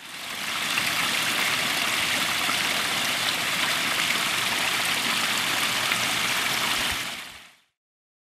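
Running water: a steady splashing rush that fades in at the start and fades out about seven and a half seconds in.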